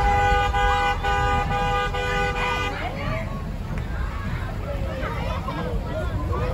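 A vehicle horn honking in a quick series of short blasts for nearly three seconds, then stopping, with crowd chatter around it.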